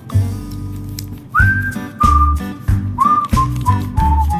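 Background music: a whistled tune over a repeating bass line and light percussion, the whistling coming in just over a second in.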